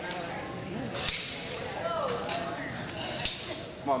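Gym hall background: faint distant voices, with two sharp clicks or knocks, one about a second in and another just past three seconds.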